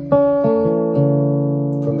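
Godin electric-acoustic guitar: an A minor 7 chord on the top four strings (D, G, B, E), strummed once with the first finger from treble to bass just after the start, then left ringing.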